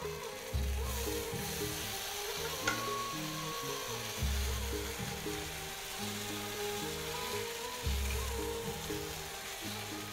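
Custard-dipped bread slices sizzling on a buttered grill pan over a gas flame, with background music playing under it.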